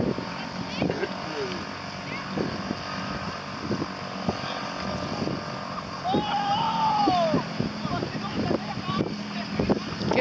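Steady low drone of a distant outboard motor on an inflatable rescue boat, with faint voices carrying across the water and one long rising-and-falling call about six seconds in.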